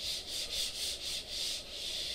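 Whiteboard eraser rubbing back and forth across a whiteboard, wiping off marker writing in quick even strokes, about four a second.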